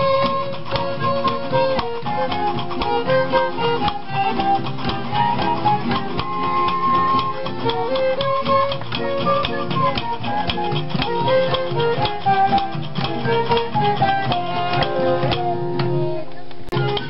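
Romani (Gypsy) string music being jammed: a fiddle playing the melody over a steady strummed guitar rhythm.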